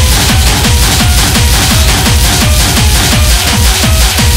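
Hard techno (schranz) track: a fast, steady four-on-the-floor kick drum under dense, distorted percussion and short repeated synth notes.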